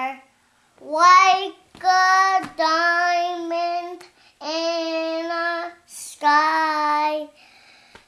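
A young girl singing a slow tune in about six long, held notes with short breaks between them.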